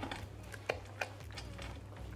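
Silicone spatula stirring a thick cream mixture in a glass measuring jug: faint scraping with a few light clicks of the spatula against the glass.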